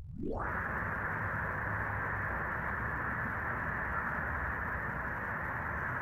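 Steady rushing static-like noise, dull-sounding with no high end, fading in at the start and holding an even level throughout.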